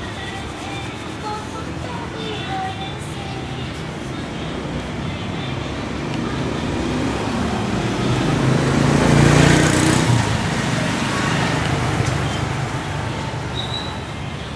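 Street traffic noise, with a road vehicle passing close by: its sound swells to a peak a little past the middle and then fades.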